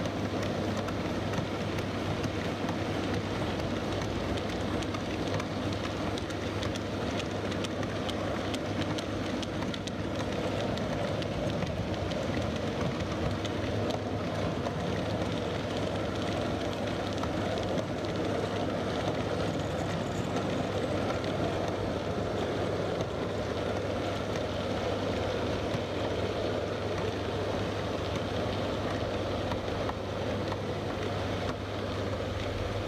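Long train of OO gauge model brake vans rolling along model railway track: a steady clattering rumble of small wheels on the rails with fine rapid clicking, over a constant low hum.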